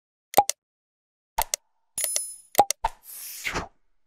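Sound effects of an animated subscribe end screen: short pops and clicks as the buttons appear and are clicked, a bell ding about two seconds in, and a whoosh near the end.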